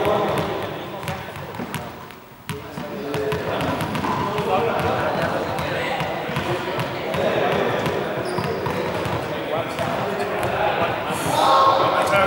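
Indistinct voices echoing in a large sports hall, with repeated knocks of balls bouncing on the hard floor.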